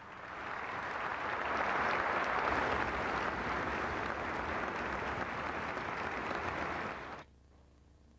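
Audience applauding in a concert hall, swelling over the first two seconds and then holding steady. It cuts off abruptly about seven seconds in.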